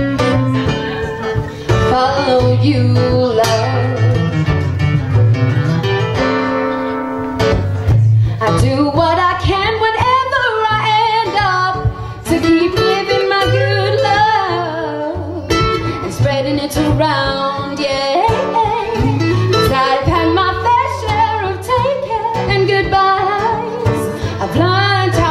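Live acoustic guitars strumming and picking a song. A woman's singing voice joins about eight seconds in and carries the melody over the guitars.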